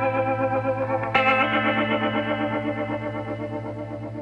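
Music: electric guitar chords with a chorus effect, held and wavering. A new chord is struck about a second in and slowly fades.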